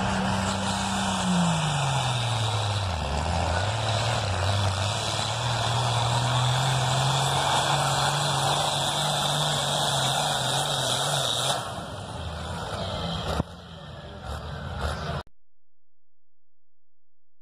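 Diesel farm tractor engine at full throttle pulling a weight sled. Its pitch sags a couple of seconds in as it comes under load, then holds steady. About twelve seconds in the sound drops away, and it cuts off shortly before the end.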